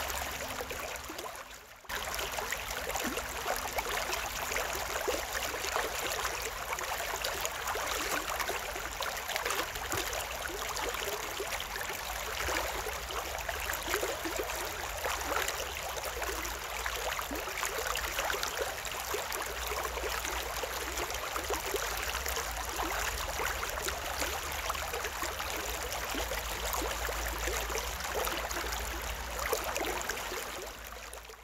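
Shallow stream water running and trickling around concrete stepping stones, a steady rush that briefly drops out about two seconds in.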